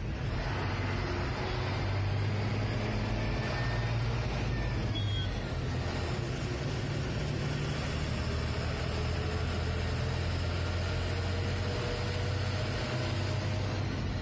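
Ashok Leyland truck's diesel engine droning steadily with road noise, heard from inside the cab while cruising.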